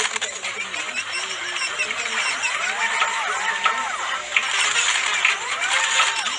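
A cluttered mix of sped-up logo-animation sound effects playing over one another: high, chirpy effects with arching pitch glides that rise and fall, scattered clicks, and voice-like fragments.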